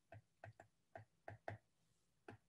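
Faint, irregular ticks of a stylus tapping on a tablet screen while capital letters are written, about six taps in two seconds.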